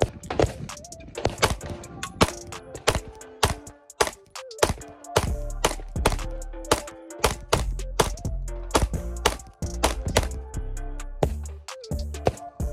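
A long, quick string of 9mm pistol shots from a Glock 19X fired with its stock barrel, several a second, heard under background music whose bass line comes in about five seconds in.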